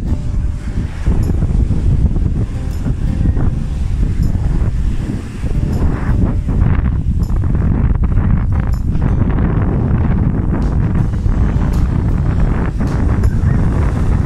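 Strong wind buffeting the microphone, a loud steady low rumble, over surf washing onto the beach.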